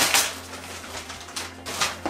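Gift wrapping paper rustling and crinkling as it is pulled off a cardboard gift box, loudest at the start, then softer with a few crackles near the end.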